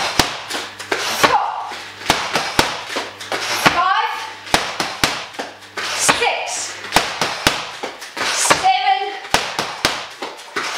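Boxing gloves and a shin kick smacking Thai pads in repeated jab, jab, cross, roundhouse combinations: clusters of sharp slaps, with short voice calls between the strikes.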